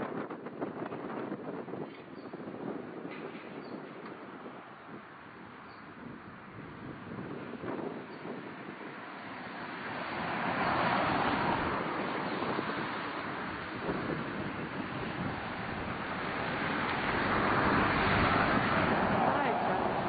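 Wind blowing in gusts, with a rushing noise that swells louder about ten seconds in and again near the end.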